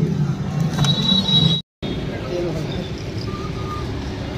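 Car engine running at low speed, heard from inside the cabin. It breaks off in a brief silence at an edit, followed by open forecourt ambience with faint voices.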